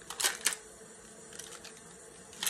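Makeup brush handles clicking against each other as a handful of brushes is handled: two sharp clicks in the first half second, then a few faint ticks.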